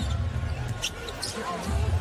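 A basketball being dribbled on a hardwood arena court during live play, from the game broadcast's audio.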